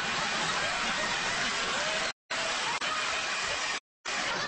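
Handheld leaf blower running with a steady rushing noise. The sound cuts out abruptly to dead silence twice, a little past two seconds in and again just before the end.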